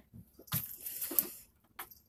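Scattered handling noises from a wet cloth and a plastic bag as a caught fish is put away: soft crunching and squishing with short clicks, one sharper click a little past a second in.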